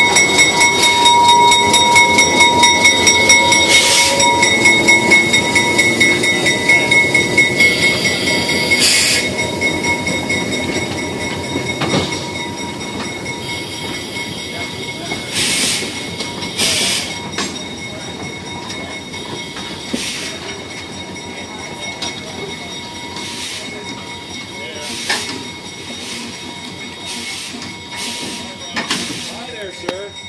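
Diesel switcher locomotive and wooden passenger coaches rolling slowly past. The engine rumble is loudest at first and fades as the coaches follow, under a steady high-pitched wheel squeal. Sharp clicks come from wheels over rail joints, more often later on.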